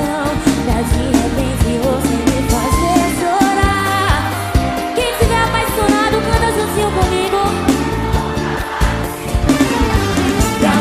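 Live brega band playing a song with a steady drum-and-bass beat, electric guitar and keyboards, and a woman singing lead.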